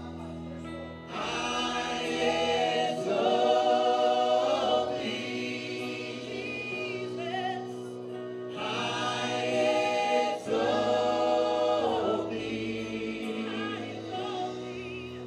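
A live church worship band: several voices singing in harmony with band accompaniment over sustained low notes. The singing comes in two long phrases, the first starting about a second in and the second about halfway through.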